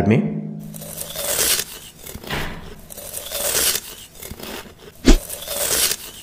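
ASMR cutting sound effect for a knife slicing through a crusty growth: a crunchy, crackling, tearing scrape that swells several times, with one sharp, loud thud about five seconds in.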